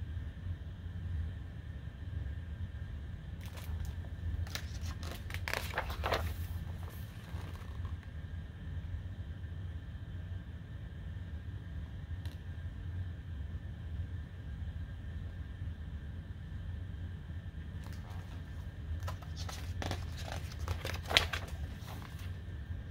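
Pages of a hardcover picture book being turned and handled. There is a papery rustle about four to six seconds in and again near the end, over a steady low hum.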